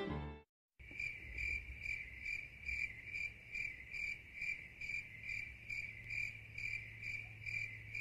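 A cricket chirping in an even rhythm, about two to three chirps a second, with a faint low hum underneath; it begins about a second in, after a brief silence.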